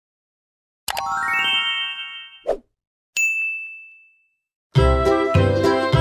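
Intro sound effects: about a second in, a chime of bell tones stepping upward and ringing on, then a short pop and a single high bell ding that fades away. Near the end, bright children's music with a steady beat starts.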